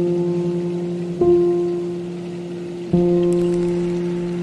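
Slow, calm ambient music: soft sustained chords, a new one struck about a second in and another near three seconds in, each fading slowly. A faint hiss of running water or rain lies beneath.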